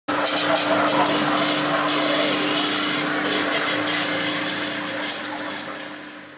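Loud, steady machine noise with a steady low hum and high whistling tones, fading out near the end.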